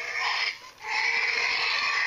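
Robotic raptor toy giving an electronic dinosaur call through its built-in speaker: a short call, a brief break, then a longer, steady call starting just under a second in.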